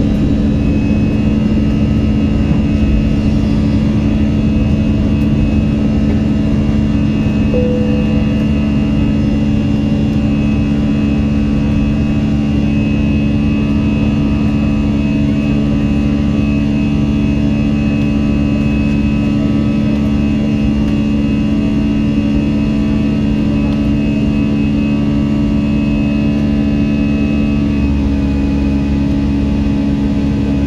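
Cabin noise of an Airbus A320-family jet's engines at takeoff power through lift-off and the first climb, heard inside the cabin over the wing: a loud, steady drone with a thin high whine. The tone shifts slightly near the end.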